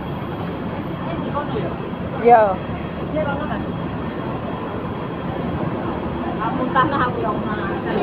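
Busy city street ambience: a steady wash of traffic and crowd noise, with brief passing voices about two seconds in and again near the end.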